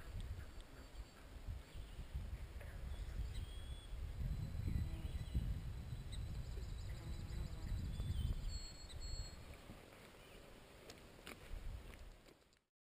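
Irregular low rumble of wind on the camera microphone, with faint high bird calls over it, including a rapid trill in the middle. A single sharp click near the end.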